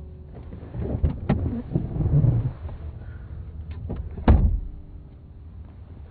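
Car door handling: several knocks and rustles, then a heavy thud of the door shutting a little over four seconds in.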